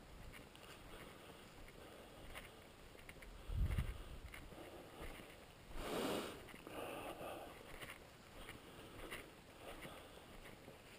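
Faint footsteps through dry fallen leaves and grass, with soft crackles as they go. There is a low thump about three and a half seconds in and a short rush of air near the microphone around six seconds.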